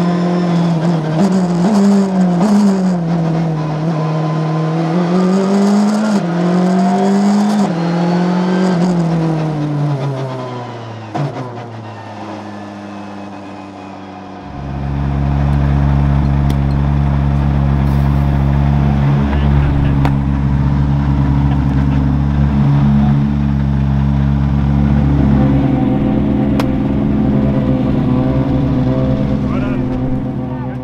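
Rally car engine heard onboard, its note rising and falling repeatedly with throttle and gear changes, then fading away about a third of the way in. It gives way to a steady, unchanging sound of sustained tones with a deep bass.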